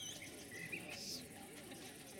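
Faint bird chirps: a few short whistled notes that glide up and down, the clearest about a second in, over a soft outdoor background murmur.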